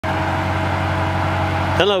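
5.7-litre Hemi V8 of an AEV Brute Double Cab pickup idling steadily, with an even low hum.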